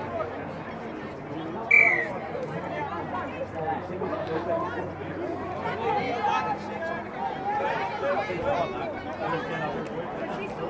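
Indistinct voices of players and onlookers calling and chattering around a touch football field, with one short, high-pitched sound about two seconds in, the loudest moment.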